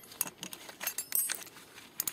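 Cut steel bicycle spokes clinking and jangling against each other and the hub motor's flange as they are worked out of the hub by hand: a string of irregular light metallic clicks.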